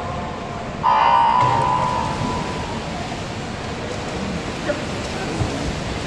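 Electronic race-start beep sounding once, about a second in, loudest for about half a second and then trailing off in the echoing pool hall, over steady hall noise.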